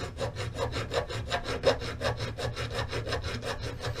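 A hand file rasping across the edge of an aluminium shotgun receiver in quick, even strokes, several a second. The file is worked with light pressure to cut a bevelled notch into the loading port.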